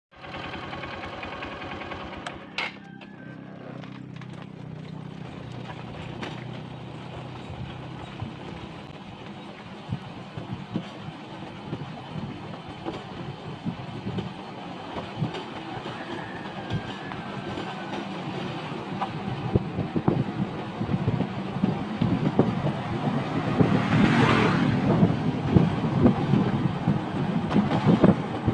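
Engine of a moving vehicle running steadily, with rumbling road noise that grows louder through the second half. A brief rush of wind noise comes about 24 seconds in.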